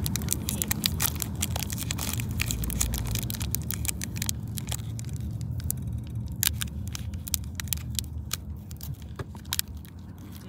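Foil Pokémon booster pack wrapper crinkling and tearing as it is handled and opened, a dense run of sharp crackles. A steady low rumble of the car cabin lies under it.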